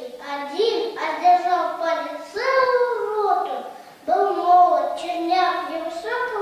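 A boy reciting a poem aloud in Russian, in slow, drawn-out phrases with short pauses between them.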